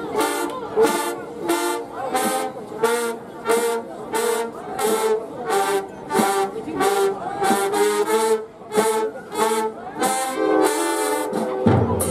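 A high school marching band's brass section plays short, punchy repeated notes over a steady beat of percussion hits, about two a second. At the very end the horns drop out and the drums, bass drums included, take over.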